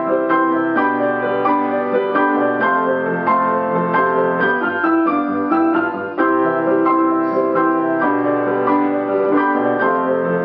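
Grand piano played four hands, two players at one keyboard, in a brisk duet of quick, evenly struck notes, with a brief dip about six seconds in.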